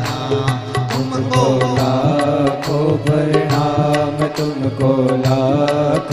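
Instrumental passage of a Hindi devotional bhajan: a melody gliding in pitch over a steady drone, with a beat struck about twice a second.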